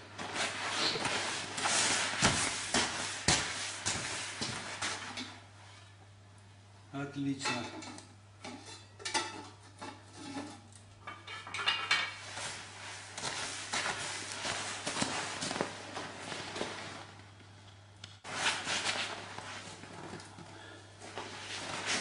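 Scattered clinks and knocks of a metal pot lid being handled on a small wood-burning stove, with a few faint voices in between.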